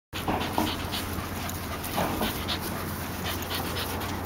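A corgi panting, open-mouthed with tongue out, in quick, uneven puffs of breath.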